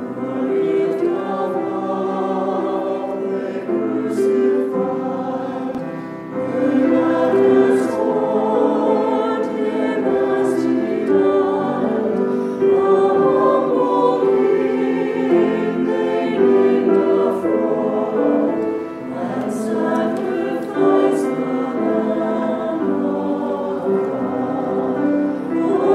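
Small mixed-voice church choir singing an anthem in harmony, with held, slightly wavering notes.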